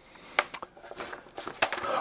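Printed paper sheets rustling and crinkling as they are handled and turned, with a couple of sharper crackles.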